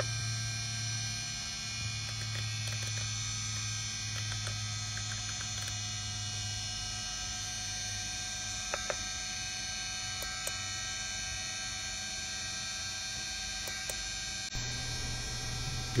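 Steady electrical hum with a faint high whine, with a few faint clicks from the instrument's rotary knob being turned.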